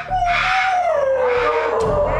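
A long drawn-out howling cry that slides slowly down in pitch for nearly two seconds.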